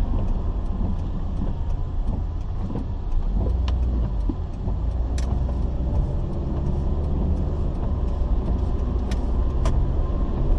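Car cabin noise while driving slowly on a rain-wet road: a steady low engine and road rumble with tyre hiss. A few sharp clicks come through, one in the middle and two close together near the end.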